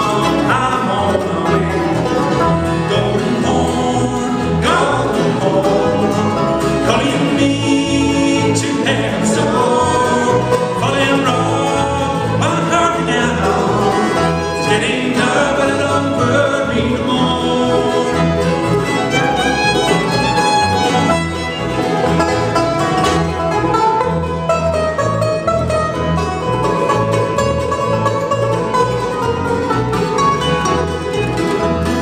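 Live bluegrass band playing an instrumental break: fiddle, mandolin, banjo, acoustic guitars and upright bass together at a steady driving tempo, with no lead vocal.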